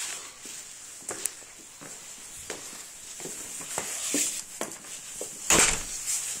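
Handling noise on a phone's microphone: scattered light clicks and knocks, with one louder rub or thump just before the end.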